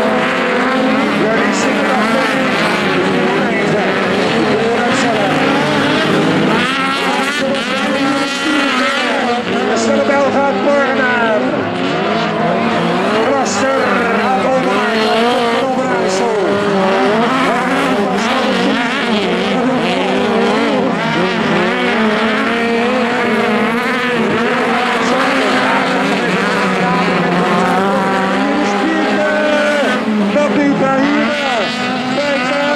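Several VW Beetle-based autocross cars race on dirt, their engines revving up and down together in a continuous, overlapping drone.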